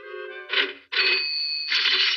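Orchestral cartoon score, with a high, steady ringing tone from about a second in, rung on a small hand bell.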